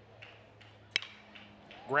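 A single sharp crack of a metal baseball bat hitting a pitched ball about a second in, putting a ground ball in play, over a faint steady background hum.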